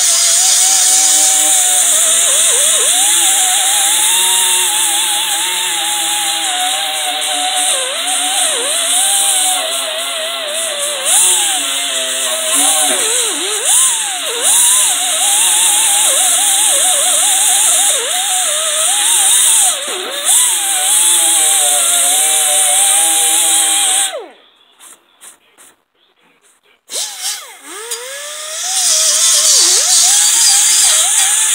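Pneumatic die grinder grinding rust off the steel deck of a brush hog: a high whine over a loud air hiss, the pitch dipping and recovering again and again as the grinder bears into the metal. It cuts off suddenly after about 24 seconds, gives a few short blips, then spins back up near the end.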